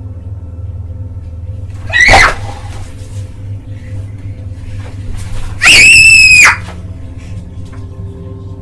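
A young girl screaming twice: a short cry about two seconds in that falls in pitch, then a longer, high, shrill scream held at one pitch around six seconds, both loud enough to distort. A steady low hum runs underneath.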